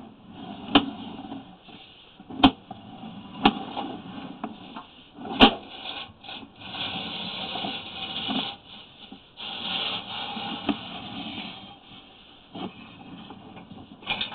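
Sewer inspection camera's push cable being pulled back through the drain pipe: uneven rubbing and scraping, with four sharp knocks in the first half.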